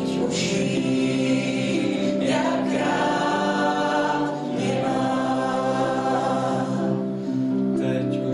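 A mixed group of men and women singing a worship song together into microphones, several voices on long held notes.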